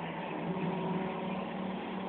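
Steady low hum under an even hiss, like room tone from machinery or ventilation, swelling slightly partway through.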